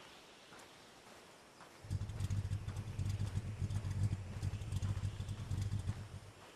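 Car engine idling with a deep, pulsing low rumble that starts suddenly about two seconds in and stops right at the end.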